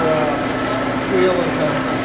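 Belt-driven antique machine shop machinery running with a steady hum: a 1902 belt-jumping metal shaper and its overhead line-shaft belts.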